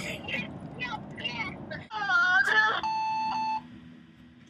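A laugh and faint voices, then a brief recorded greeting over the phone ending in a single steady voicemail beep lasting under a second, near the end.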